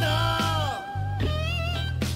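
Background music led by a guitar playing notes that bend and slide, over a steady low bass line.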